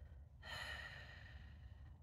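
A woman's long, faint sigh, starting about half a second in and lasting over a second.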